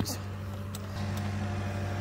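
Cat tracked skid steer's diesel engine idling, a steady low hum.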